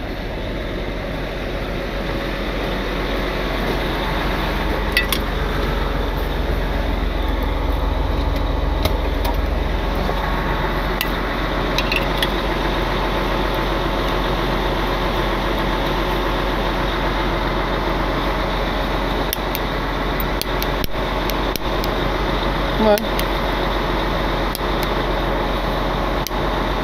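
Heavy wrecker's diesel engine idling steadily, with the hiss of a handheld propane torch thawing a frozen part on the truck.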